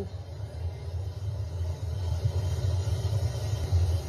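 Low, steady rumble of a mudslide (debris flow) surging down a street, heard from news footage through a television speaker.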